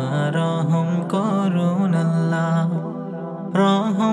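Bangla Islamic gojol: a male voice sings a drawn-out, wordless, ornamented melodic line over a steady low drone. The sound eases off about three seconds in and swells again just before the end.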